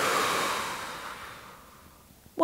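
A person's deep, deliberate breath out, loud and breathy, fading away over about a second and a half.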